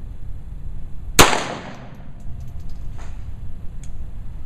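A single pistol shot a little over a second in, a sharp report followed by a short echo off the range hall.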